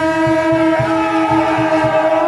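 A long, steady horn tone held on one pitch over a regular low drumbeat of about three beats a second. The horn tone fades near the end as crowd shouting rises.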